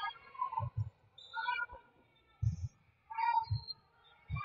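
Short high-pitched shouts and calls from girls and onlookers in a gym during a volleyball rally, with several dull thumps from the play.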